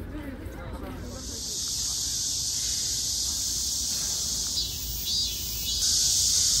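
A steady, loud chorus of cicadas buzzing high-pitched. It sets in about a second in, after a moment of crowd chatter, and grows louder near the end.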